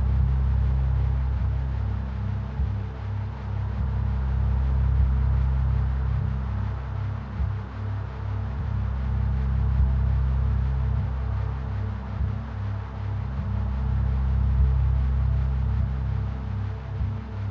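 Ambient meditation music: a deep, slowly swelling drone carrying a steady 4 Hz binaural beat (theta waves), with a low tone pulsing evenly and soft, sparse percussive ticks.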